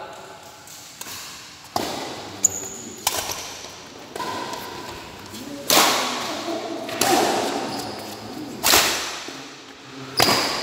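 Badminton rally in a large echoing hall: about seven sharp smacks of rackets hitting the shuttlecock, the loudest ones near the middle and near the end ringing out. Short squeaks of shoes on the court come between hits.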